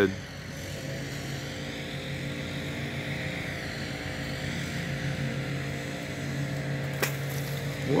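A steady engine hum with several pitched tones layered in it, unchanging in pitch. One sharp click comes about seven seconds in.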